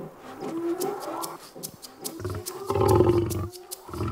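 Lions growling at each other through the bars of a gate during a first introduction of a male to a lioness: a shorter growl in the first second, then a louder, deeper growl from about two seconds in to three and a half.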